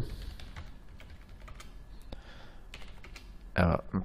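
Computer keyboard typing: scattered, soft key clicks as a password and then a short command are entered.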